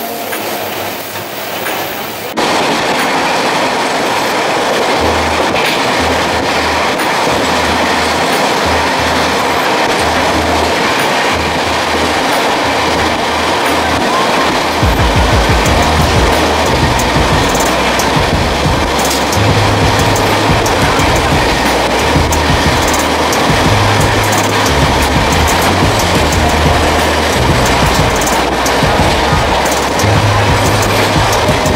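Passenger train running at speed, heard from inside a coach at an open window, with rail noise and occasional wheel clicks. A music track's bass line comes in faintly about five seconds in and grows stronger from about fifteen seconds.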